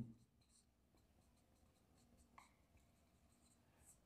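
Faint short strokes of a marker pen writing on a whiteboard.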